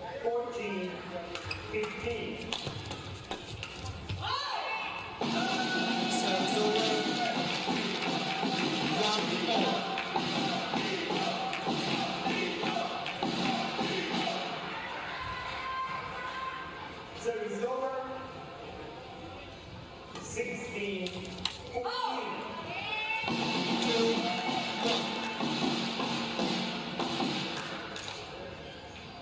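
Badminton rallies in a large hall: racket strikes on the shuttlecock as sharp taps, in two short bursts. Music with sustained chords plays between them, from about five seconds in to the middle and again near the end.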